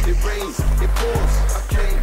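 Hip-hop background music: a deep bass note held under kick drums that fall in pitch, about two a second, with no vocal line.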